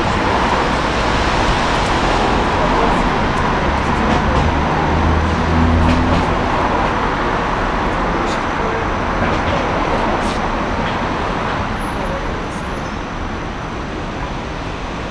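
Steady street traffic noise, with a vehicle engine growing louder for a couple of seconds around the middle.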